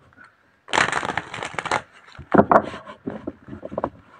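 Tarot cards being handled and shuffled: a dense rustle about a second long, followed by a run of short crackling clicks.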